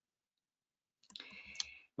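Silence, then a faint rustle from about a second in and a single sharp click near the end: a computer mouse click that advances the presentation slide.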